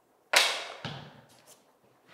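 Chalk on a blackboard: a sharp tap of the chalk against the board about a third of a second in, fading quickly, followed by two fainter strokes.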